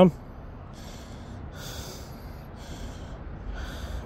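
A person breathing close to the microphone, about five soft breaths in a few seconds, over a low steady rumble.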